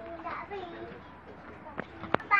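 Faint voices of a young child and others talking over a low steady background hum, with a sharp click near the end.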